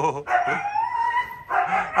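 A dog giving one long whine of about a second, rising slightly in pitch, as it is fed.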